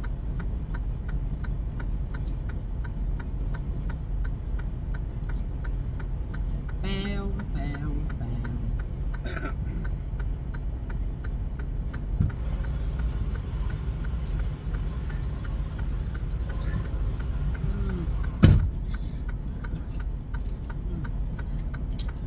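Idling truck engine heard inside the cab: a steady low rumble with a light, rapid, even ticking over it. A single sharp knock about eighteen seconds in.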